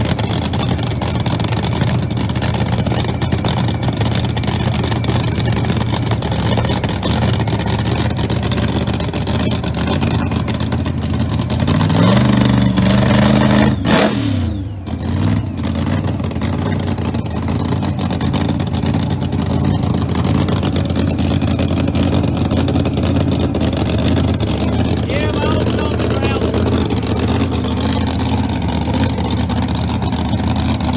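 Pro Mod drag race car engine idling with a steady, lumpy note, revving up for about two seconds around twelve seconds in before dropping back to idle.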